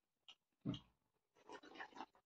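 A soft thump, then about half a second of noisy slurping near the end as broth is sipped from a steel bowl held to the lips.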